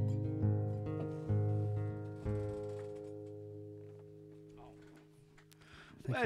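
Acoustic guitar playing the last few plucked notes of a song, then the final chord ringing out and fading away to near silence.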